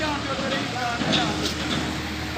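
Faint voices talking over a steady low hum, with a couple of light knocks about a second in.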